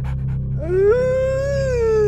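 A dog howling once. The howl starts about half a second in, rises in pitch, holds, then falls away near the end.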